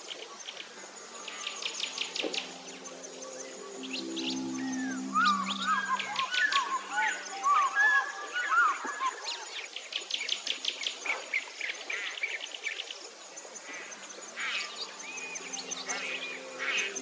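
Soft background music with low held tones under many birds chirping and trilling, busiest in the middle with quick overlapping chirps.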